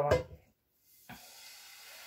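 Thin pancake batter sizzling in a hot frying pan as it is poured in and swirled: a faint, steady hiss that starts about a second in.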